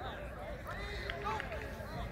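Indistinct voices of several people talking at once, with no words standing out.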